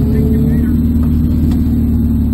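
Spec Miata's four-cylinder engine idling steadily, heard from inside the cabin of the stationary car.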